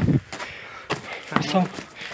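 Short snatches of a man's voice, with a few light knocks in between.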